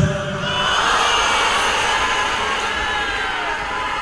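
Concert audience cheering and chanting over soft band accompaniment, in a gap between two sung lines.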